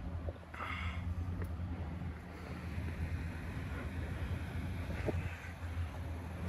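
Wind on the phone's microphone: a steady low rumble, with a brief hiss about half a second in.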